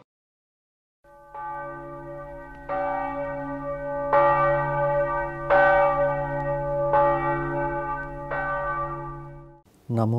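A deep bell struck about six times, roughly every second and a half, each stroke ringing on over a steady low hum. It stops just before the end.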